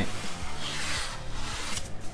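Hands rubbing and pressing across the face of a flexible solar panel, pushing it down onto double-sided VHB tape: a dry, scraping hiss that stops just before the end, with faint music underneath.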